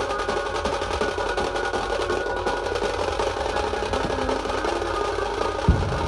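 Dhumal street band playing a qawwali tune: quick, steady drumming on dhol-type drums under a melody of held notes, with one heavy low drum hit near the end.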